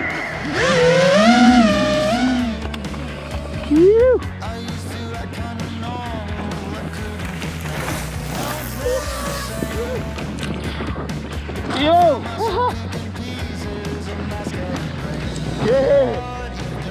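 Background music over mountain bike tyres rolling on a gravel trail, with a rider laughing about twelve seconds in.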